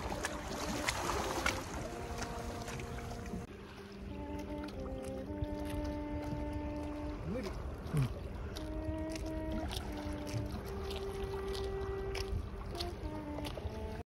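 Background music of held, slowly changing notes over a low rumble of wind noise.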